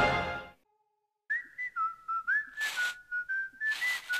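Closing music fades out. After a brief silence, a whistled tune of a few high notes begins about a second in, sliding from one note to the next, with two short swishing noises over it.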